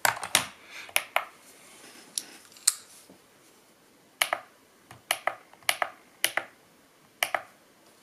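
Irregular sharp clicks and taps: a stainless-steel digital kitchen scale is set down on a wooden table and its buttons are pressed, while a folding knife is handled.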